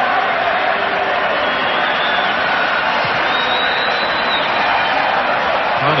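Football stadium crowd: a steady, loud din of many voices with no break, heard through an old, muffled television broadcast soundtrack.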